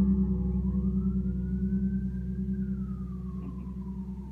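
Zon electric bass guitar through an amplifier letting a final low chord ring out, sustained and slowly fading until it stops just after the end. Above it, a faint thin tone slowly rises and then falls in pitch.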